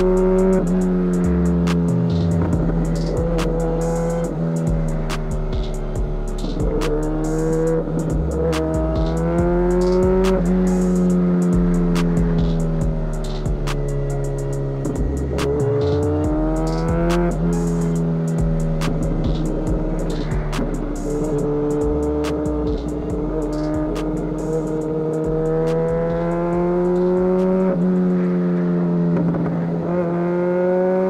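2017 MV Agusta F4 RR's inline-four engine through an aftermarket SC Project exhaust, its pitch climbing and dropping again and again as the bike accelerates and changes gear. A hip-hop beat with a stepping bassline plays underneath.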